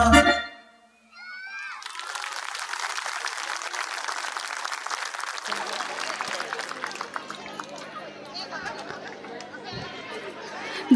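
Recorded dance music cuts off about half a second in. After a brief pause, an audience in a hall claps and chatters steadily, with children's voices rising over it. A low steady hum joins about halfway through.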